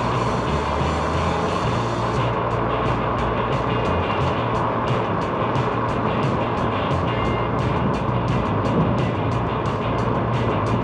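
Steady driving noise of a vehicle moving along a paved road, with music playing over it; from about two seconds in, a regular beat of light ticks runs about two to three times a second.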